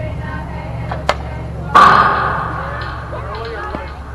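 Sounds of a softball game: a sharp crack about a second in, then a louder sudden impact that fades away over about a second, over the chatter of spectators.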